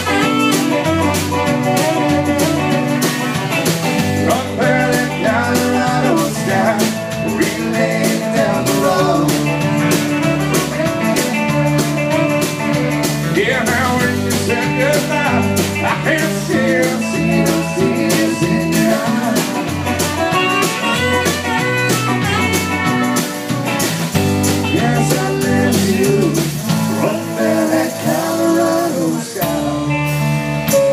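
Live Southern rock band playing an instrumental break with no vocals: electric and acoustic guitars, electric bass, drum kit and saxophone, at a steady beat. The bass drops out for a moment near the end.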